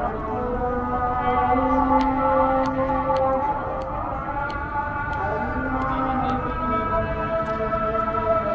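A call to prayer (adhan) sung by a muezzin: long held, wavering notes, each drawn out over a second or two, with slight glides between pitches.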